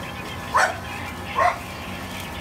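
A dog barking twice, two short sharp barks a little under a second apart.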